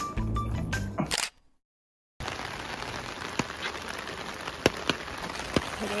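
Background music that cuts off just over a second in. After about a second of silence, rain falls on a clear plastic umbrella as a steady patter with a few sharp drop taps.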